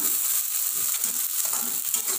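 Chopped shallots, garlic, green chilli and tomato sizzling in hot oil in a wok, stir-fried with a spatula that scrapes against the pan.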